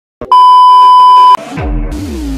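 Television colour-bars test tone: a loud, steady, high beep lasting about a second that cuts off abruptly. Deep bass sweeps falling in pitch follow.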